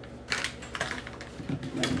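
A few short clicks and crinkles from hands handling a plastic candy bag and a small glass bowl on a tabletop.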